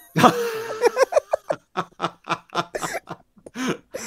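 People laughing: a loud burst of laughter just after the start, then a string of short chuckles that die away near the end.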